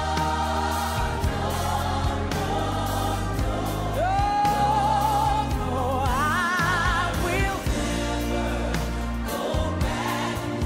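Live gospel song: a woman singing lead, holding a long note with vibrato about four seconds in and then running higher, over a drum kit and band with other voices singing along.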